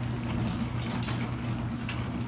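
Sectional garage door rising on its opener: a steady motor hum with clicking and rattling from the door's rollers and panels.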